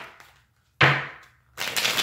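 A tarot deck being shuffled by hand: two noisy bursts of cards riffling, a sharp one about a second in that fades away and a second one near the end.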